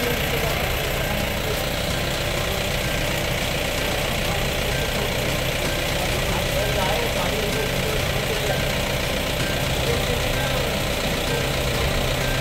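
A vehicle engine idling steadily, with people's voices in the background.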